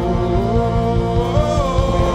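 Live worship band playing a rock song: a man singing over acoustic and electric guitars, with a steady beat underneath. The sung melody steps up to a higher note about a second and a half in.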